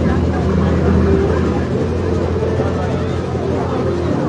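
An engine running at a steady low drone, with faint crowd voices over it.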